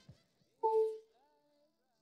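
A brief musical note held for about half a second, beginning just over half a second in, followed by fainter wavering tones; otherwise near silence.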